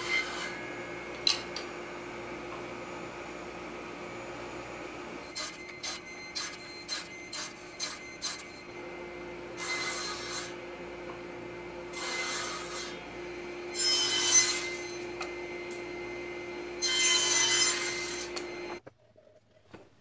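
Table saw running with a steady hum, with a run of light wooden knocks, then four cuts through softwood slats, each lasting about a second. The sound cuts off suddenly near the end.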